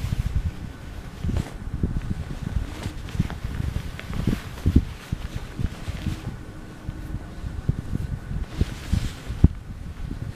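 Fabric rustling and soft irregular bumps of a reborn doll and its clothes being handled on a bed close to the microphone, with a few sharper knocks.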